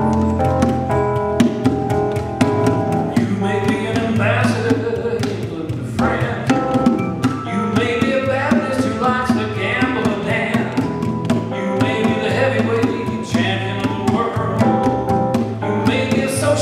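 Live band playing a steady-beat song: electric bass, keyboards and hand-played bongos.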